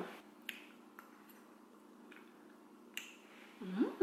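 Quiet eating sounds: a few small sharp clicks from a metal fork and mouth while chewing, about half a second, a second and three seconds in. Near the end, a rising 'mm' hum of enjoyment.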